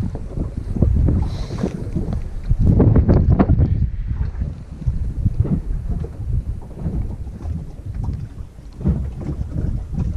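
Wind buffeting the GoPro's microphone, a rumbling noise that rises and falls in gusts and is strongest about three seconds in.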